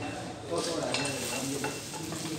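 A steady hiss of room noise with faint voices of people in the background, louder from about half a second in.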